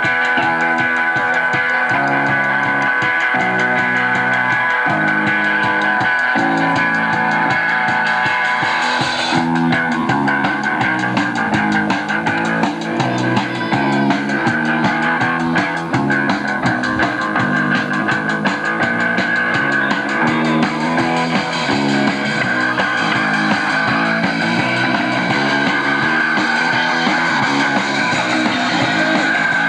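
Live rock band playing an instrumental passage: electric guitars strumming changing chords over bass guitar and drums. The sound fills out about nine seconds in, with cymbals coming in harder.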